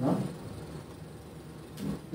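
A pause in speech: room tone with a faint steady low hum, after a brief sound right at the start.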